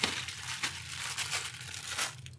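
Plastic packaging crinkling and crackling as a plastic postal mailer and the small plastic bags inside it are handled and tipped out.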